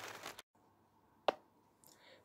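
A faint short rustle, then dead silence broken by one sharp click about a second and a quarter in.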